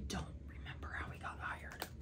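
A woman whispering faintly under her breath, over a low steady room hum.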